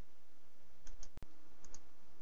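A few faint short clicks in two close pairs over steady microphone hiss and low hum. The sound drops out for an instant just after the middle.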